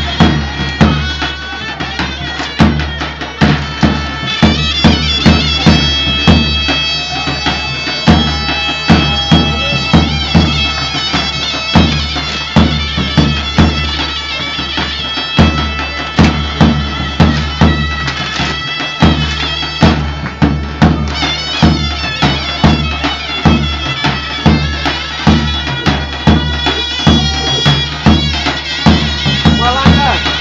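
Live Greek folk dance music: a large double-headed bass drum (daouli) beats a steady rhythm under loud, nasal reed pipes playing a continuous melody.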